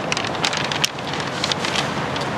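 A large paper blueprint sheet rustling and crinkling as it is handled and folded, an irregular crackle close to the microphone.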